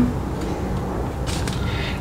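Steady low background rumble and hum, with a brief soft hiss a little past halfway.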